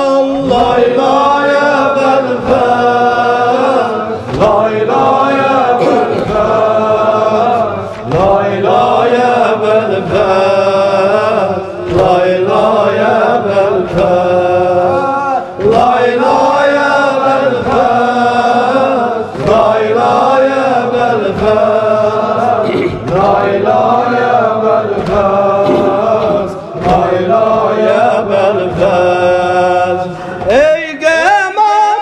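Voices chanting a mournful mərsiyyə, a lullaby-style Shia lament, in long melodic phrases of about four seconds, with short breaks between them.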